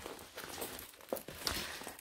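Faint crinkling of the clear plastic film covering a diamond painting canvas as it is handled, with a couple of small clicks about halfway through.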